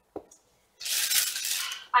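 A short click, then about a second of loud rattling and rustling as small toiletry bottles and containers are handled while packing.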